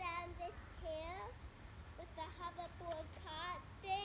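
A child's high voice singing without clear words, in short phrases of held and gliding notes, over a low steady background rumble.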